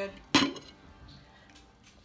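A single sharp clank of kitchenware against a dish about a third of a second in, ringing briefly.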